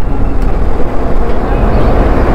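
Riding noise on a Kawasaki Versys 650: loud, steady wind rush over the microphone with the motorcycle's parallel-twin engine running beneath it at moderate road speed.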